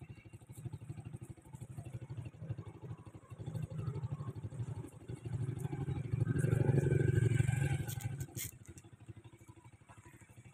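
A passing motor vehicle engine, growing louder to a peak about seven seconds in and then fading away, with a sharp click near the end.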